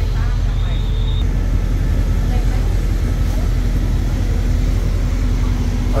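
Steady low rumble of a diesel passenger train idling at the platform. A short high whistle-like tone sounds for about half a second near the start.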